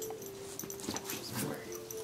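A dog whimpering: a few short whines, about a second in and again around a second and a half.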